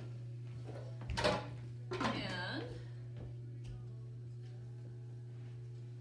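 A steady low hum throughout, with a single sharp knock about a second in.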